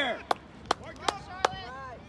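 Four sharp hand claps, evenly spaced a little under half a second apart, with faint voices in the background.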